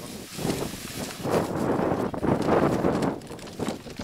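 Gritty rustling of thermite rail-welding powder being poured from a plastic bag into the weld crucible, building up in the middle and tailing off near the end.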